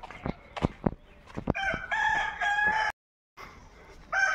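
A rooster crowing once, starting about one and a half seconds in and cut off suddenly near three seconds, after a few sharp clicks in the first second.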